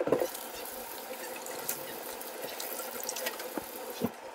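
Water running steadily from a kitchen faucet into a stainless steel sink while hands are washed under the stream.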